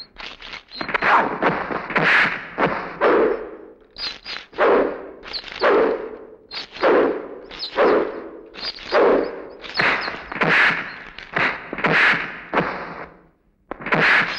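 Film fist-fight sound effects: a string of punch and body-hit thuds, each with a short swish, landing about once a second. The hits stop briefly just before the end.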